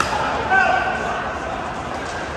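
Indoor pickleball play: a sharp pop of the ball right at the start, then a short high-pitched squeak about half a second in, over the echoing chatter of a large sports hall.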